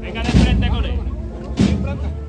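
Two loud, deep strokes of a procession band's bass drum and cymbals, landing about every second and a quarter, with voices and held band notes between them.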